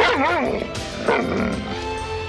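A husky-type dog vocalising in short wavering calls, one at the start and another about a second in, over background music with held notes.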